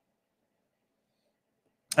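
Near silence, with a man's voice starting right at the very end.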